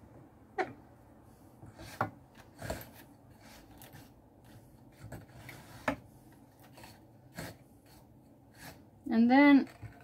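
Fibre being worked onto a drum carder's large drum with a wooden-handled tool: scattered light clicks and taps on the carder, with faint scratching between them. A short hum or voiced sound near the end.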